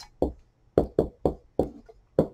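Dry-erase marker writing on a whiteboard: a quick series of about six short taps and squeaks as the strokes go down.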